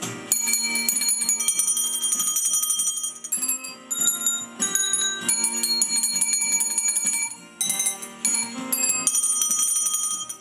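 A tune played on a set of handheld metal hand bells, their high notes ringing on in quick repeated strokes, over electronic keyboard accompaniment. The bells pause briefly about three and a half and seven and a half seconds in.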